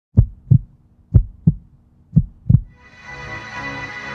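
Heartbeat sound effect: three deep double thumps, about one a second, then electronic music with held notes comes in about two and a half seconds in.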